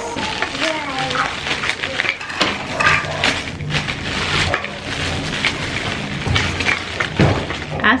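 Clear cellophane wrapping crinkling and crackling continuously as hands open it and pull an item out.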